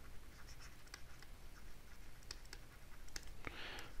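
Faint, scattered light clicks and scratches of a stylus writing by hand on a tablet screen.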